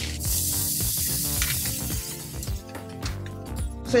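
Water poured into a hot frying pan of chilli con carne, hissing and sizzling as it hits the hot pan; the hiss is loudest in the first second and a half, then dies down. Background music plays throughout.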